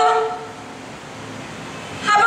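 A woman's voice through a microphone and PA holds one long note that fades about a third of a second in, followed by a quieter stretch of room sound until her voice returns.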